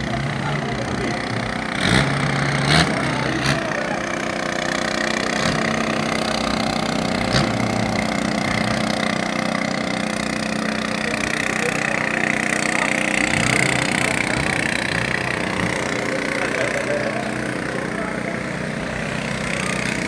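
A longtail boat's engine running steadily, an unbroken drone with a wavering higher whine, with a few sharp knocks in the first few seconds and some voices in the background.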